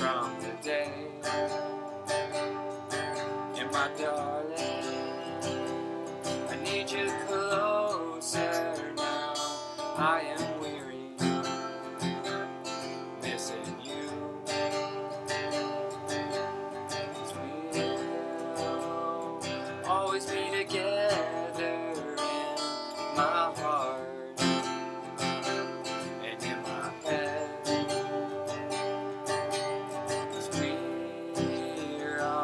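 Cutaway acoustic guitar strummed steadily, playing a slow song, with a man singing over it in phrases.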